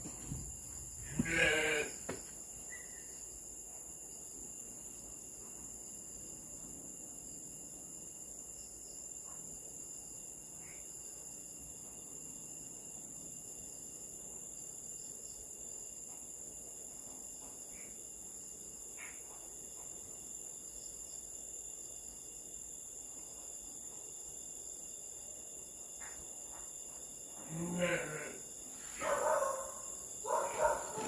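Sheep bleating: one wavering bleat about a second in and more near the end, over the steady high drone of night insects.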